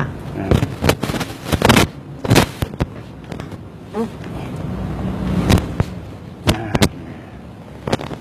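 A series of sharp snaps at an irregular spacing, several close together in the first two and a half seconds and a few more in the second half.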